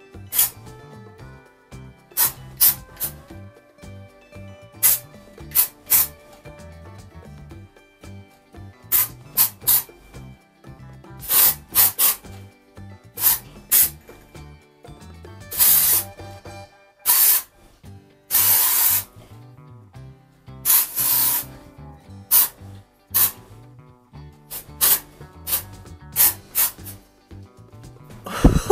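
An aerosol can of dry shampoo spraying onto hair in many short hisses, a few held longer in the middle, over quiet background music.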